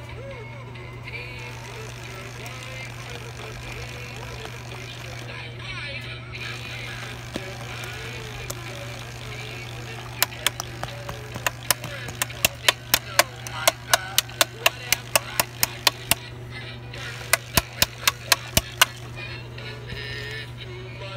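Animated Gemmy snowman toy playing a tinny song with singing over a steady low hum. About halfway through, a run of sharp clicks starts, about two to three a second, pauses briefly, then resumes.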